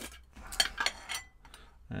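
A metal tin of wicking cotton being opened and handled: light scrapes and a cluster of small metallic clinks from the lid, one ringing briefly about a second in.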